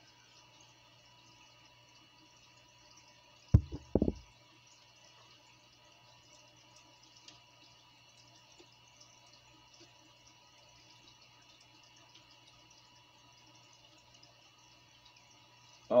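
Faint steady hum and water trickle of an aquarium filter running. About three and a half seconds in, a short cluster of loud low thumps.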